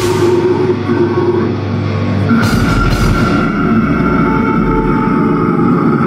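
Heavy metal band playing live at full volume: distorted guitars, bass and drums, dense and continuous, with a cymbal crash about two and a half seconds in and held guitar notes after it.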